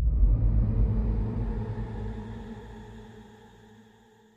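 Logo-intro sound effect: the rumbling tail of a deep cinematic impact, with a sustained shimmering tone over it, dying away steadily and fading out near the end.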